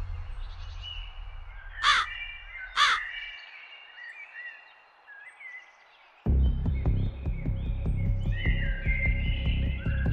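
A crow caws twice, about a second apart, near two seconds in, over small birds chirping. A low music bed drops out soon after, and about six seconds in louder music with a steady low beat starts suddenly.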